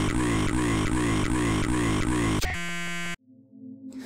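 Glitch-effect horror audio: a distorted voice fragment, a single word, looped in a rapid stutter about three times a second over a low drone. About two and a half seconds in it turns into a harsh electronic buzz with a steady tone, which cuts off suddenly, leaving only a faint hum.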